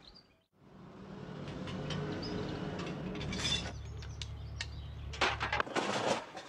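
A steady low hum with faint bird chirps over it. The hum drops to a lower pitch about three seconds in and stops shortly before the end, where a few sharp knocks come in.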